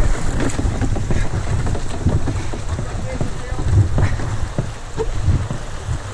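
Wind buffeting the microphone in a steady low rumble over the rush of fast, choppy river current, with a few brief knocks.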